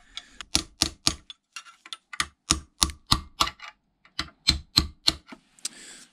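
A hammer striking a cold chisel held against the back plate of an old rim latch in a vise, chipping off the squashed brass of a bearing bush. The sharp metallic blows come in three quick runs, about three to four a second, with short pauses between them.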